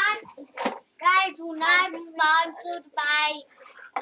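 A child singing a few held notes, high-pitched, with no clear words.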